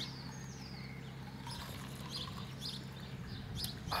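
Small birds chirping: short, high chirps, some sliding down in pitch, repeating irregularly over a steady low hum.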